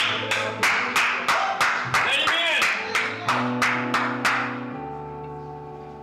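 Church keyboard holding sustained chords under the preaching, with an even beat of sharp claps or drum hits, about three a second, that stops about four seconds in.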